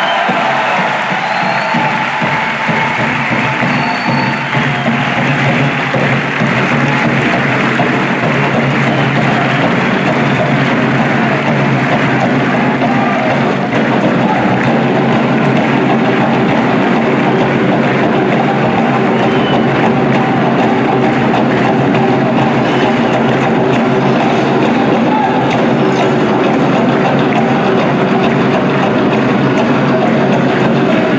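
A large audience applauding and cheering, with music underneath.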